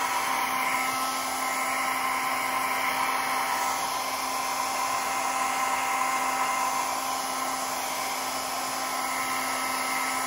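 Small handheld hair dryer running steadily, blowing across wet alcohol ink: a constant rushing of air with a fixed, steady motor whine.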